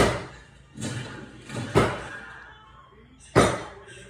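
Crashing sound effects from an animated film's soundtrack, played through a TV speaker: about five heavy crashes and thuds in quick succession, the loudest at the start and another about three and a half seconds in.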